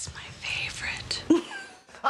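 Soft whispered speech, breathy and hissy, with a brief voiced sound about a second and a quarter in.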